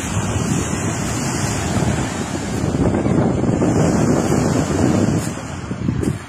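Small sea waves washing and foaming onto a fine-pebble beach, with wind buffeting the microphone.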